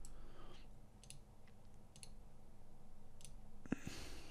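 A few faint, isolated computer mouse clicks, about a second apart, over a low steady hum.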